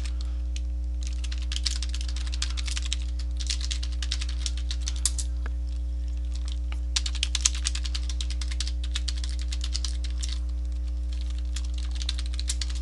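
Computer keyboard typing in bursts of rapid keystrokes with short pauses between them, over a steady low electrical hum.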